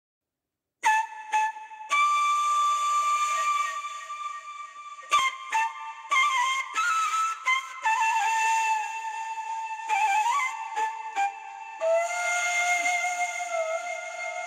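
Background music: a solo flute plays a slow melody with a breathy tone, held notes and small ornaments, starting about a second in.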